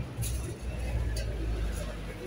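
Low rumble of street traffic, a vehicle passing close by, with indistinct voices of passers-by.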